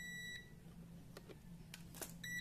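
Multimeter continuity beep, a steady high tone that stops about a third of a second in as the probes come off a relay module's terminals; the beep means the two probed relay contacts are connected. A few faint ticks follow.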